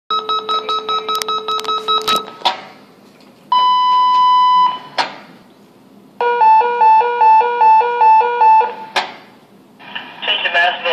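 Fire department dispatch alert tones over a loudspeaker. First comes about two seconds of pulsed beeping over a steady low tone, then a single steady tone of about a second, then a high-low alternating beep of about two and a half seconds. Each section ends with a sharp click.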